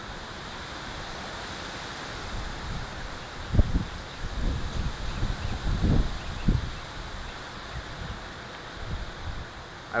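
Steady outdoor background hiss with a few short, low thumps of wind buffeting the microphone, the loudest about three and a half and six seconds in.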